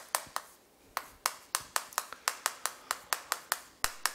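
Chalk tapping against a chalkboard as Korean characters are written, a quick series of sharp clicks about five a second, each stroke a separate tap, after a short lull near the start.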